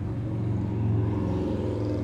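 A low, steady rumble with a hum, swelling slightly in the middle.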